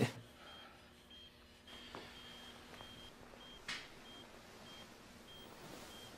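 Faint, short high-pitched beeps of a hospital bedside patient monitor, repeating about every half second over a low room hum. A soft rustle comes about three and a half seconds in.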